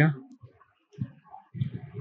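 A man's voice trails off, then a short pause holds a few faint clicks, typical of a computer mouse, before the voice picks up again.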